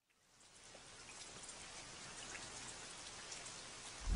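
Faint, even hiss with light pattering like rain, fading in from silence about half a second in and slowly growing louder.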